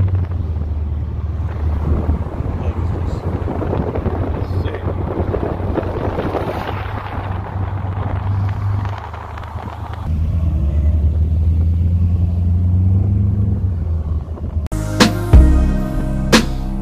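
A car driving with its windows down, heard from inside the cabin: a steady engine hum under road and wind noise. After about ten seconds the engine note steadies and its pitch slowly rises. About a second before the end it cuts abruptly to music.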